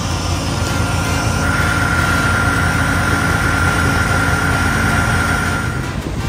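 An engine running: a steady low rumble, with a steady high whine joining in about a second and a half in.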